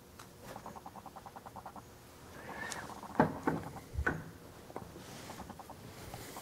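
Faint handling noise from the part and the camera: a quick run of light ticks, then a rustle and a few sharp knocks about halfway through.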